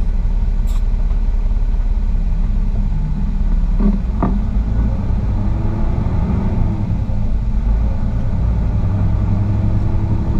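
Heavy-duty wrecker's diesel engine running with a steady low rumble as the truck creeps forward, heard from inside the cab. There are a couple of brief clicks about four seconds in.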